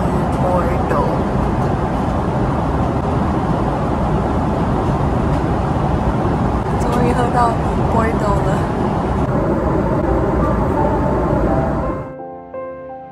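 Steady in-flight cabin roar of an airliner, engine and airflow noise filling the cabin, loud and close on the microphone.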